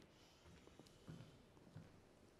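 Near silence: the room tone of a large, empty theatre auditorium, with three faint, soft thumps.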